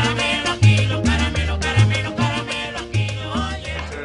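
Salsa music: a repeating bass line under regular percussion and melody.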